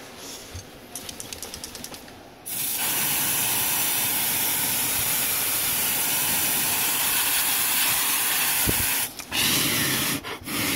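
Can of freeze spray hissing in one long burst of about six seconds, starting and stopping abruptly, then a short second burst near the end. It is being sprayed on a shorted logic board to find the component that heats up.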